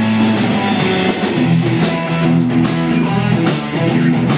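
Live rock band playing an instrumental passage on guitar and drum kit, with no singing.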